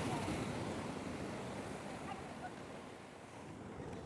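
Ocean surf washing onto the shore below: a steady rush of broken waves that slowly fades over a few seconds, with a short click at the very end.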